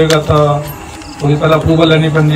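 A man's voice speaking into a microphone, with a short break in the talk around the middle.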